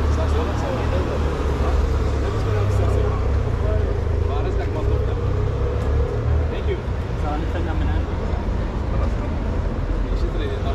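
City street ambience: voices of passers-by talking over a steady low rumble of road traffic.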